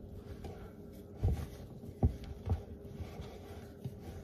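A hand kneading and mixing a sticky flour-and-buttermilk dough in a ceramic bowl: faint squishing, with a few dull thumps as the dough is pressed down.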